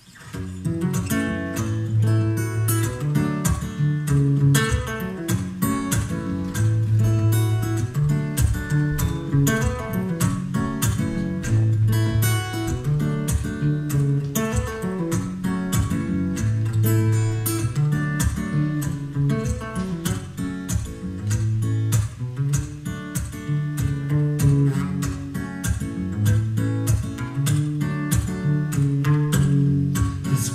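Acoustic guitar strummed steadily as a song's instrumental introduction, starting at the very beginning, with a repeating pattern of low bass notes under the strums.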